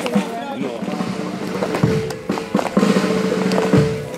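Band music with long held notes, broken by short sharp strokes.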